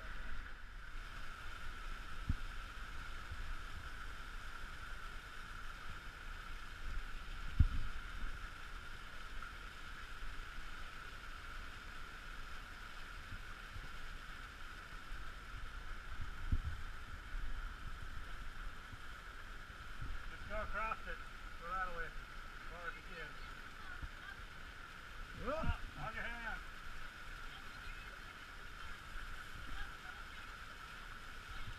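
Steady rush of muddy flood water running through a narrow sandstone slot canyon, with a few knocks of feet and gear against the rock. A person's voice calls out briefly twice near the end.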